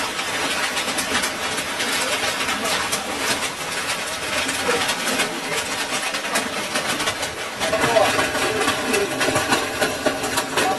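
Heavy hail coming down: a dense, continuous clatter of hailstones striking the ground and roofs, with voices faintly underneath.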